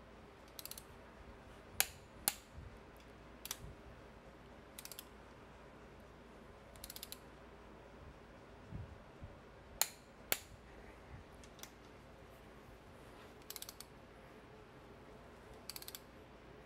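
Click-type torque wrench ratcheting in short bursts of rapid pawl clicks as intake manifold bolts are drawn down. Between the bursts come a few louder single sharp clicks, in two close pairs, typical of the wrench clicking over at its set torque.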